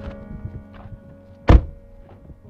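A single heavy door thunk about one and a half seconds in, much the loudest sound, over soft, sustained background music.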